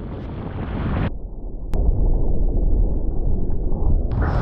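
Strong wind and rushing sea water on a surfski's deck-mounted action camera microphone. About a second in, the hiss drops away and the sound turns muffled; a single click follows, then a heavy low rumble of wind buffeting the microphone as water washes over the deck.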